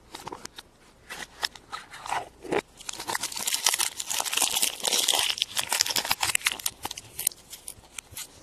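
Thin foil wrapper crinkling and rustling as it is peeled off a chocolate surprise egg by hand, in quick irregular crackles that are thickest through the middle.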